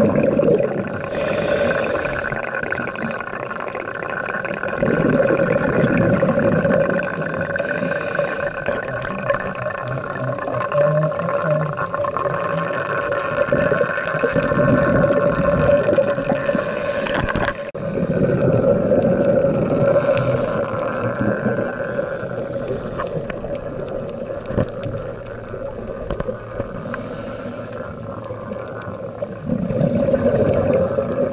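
Scuba diver's regulator breathing heard underwater through an action camera's waterproof housing: a short hiss of inhalation every several seconds, each followed by a longer rumble of exhaled bubbles, over a steady hum.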